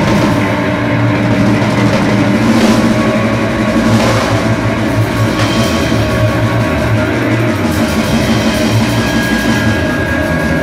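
A live rock band playing loud and without a break, with electric guitar and drum kit.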